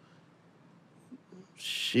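Quiet room tone, then near the end a long hissing 'sh' as a man starts to say 'sheesh'.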